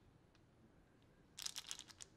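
A small translucent plastic case handled in the fingers: a quick flurry of sharp plastic clicks and crinkles lasting about half a second, starting about one and a half seconds in, after near quiet.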